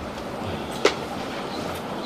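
Steady hiss of background noise picked up by a close microphone, with one short, sharp click a little under a second in.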